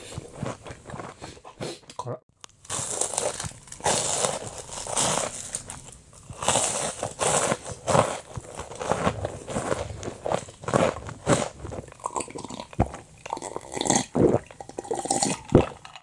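Close-miked chewing of a crispy breaded pork fillet cutlet: crunching of the fried coating with wet mouth clicks and smacks, and a short break about two seconds in.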